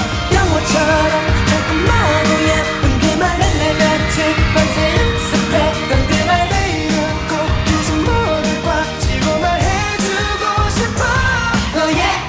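Upbeat K-pop dance song: a male group singing over a steady dance beat with a full backing track.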